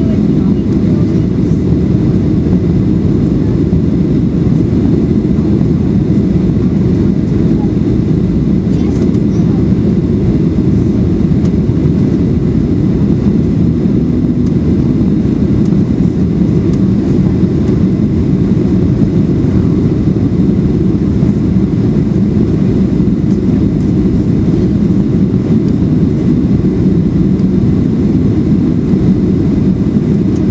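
Steady, low cabin roar of a Boeing 737-400 on final approach with flaps extended: engine and airflow noise heard inside the cabin. It holds even throughout.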